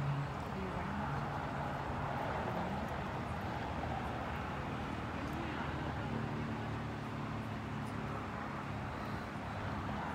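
Steady outdoor background noise with faint, distant voices coming and going.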